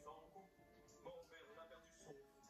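Faint television sound, heard through the TV's speaker: a programme's music under a voice.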